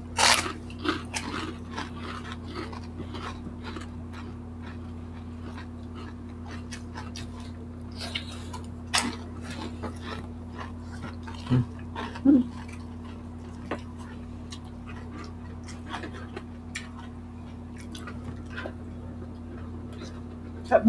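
Close-miked eating: crisp, crunchy bites into fried food and wet chewing. The loudest crunch comes just after the start, with more crunches scattered through, over a steady low electrical hum.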